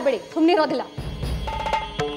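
A woman's voice speaking forcefully for about the first second, then background score music: sustained tones with short percussive strikes.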